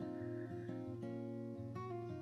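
Soft background music: gentle acoustic guitar with held notes that change every half second or so.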